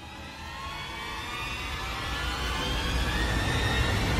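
Build-up strings sound effect: orchestral strings sliding upward in pitch and growing steadily louder in a tense crescendo.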